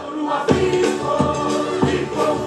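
A Tahitian choir of women singing together to strummed stringed instruments. A steady beat falls about every two-thirds of a second, and the voices come in strongly about half a second in.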